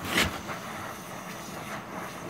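Gas torch flame hissing steadily as it heats steel bar, with a brief sharper hiss just after the start.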